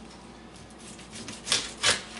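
Plastic hot dog package being worked open by hand on a countertop: soft rustling, then two loud rasping rips of the plastic near the end.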